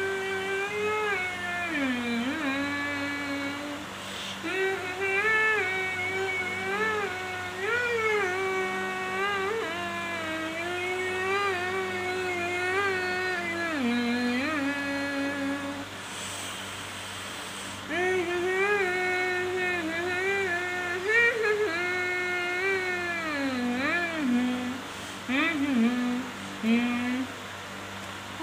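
A woman humming a song melody with her hands pressed over her mouth, so the tune comes out muffled and wordless. The melody breaks off briefly a little past halfway, then resumes.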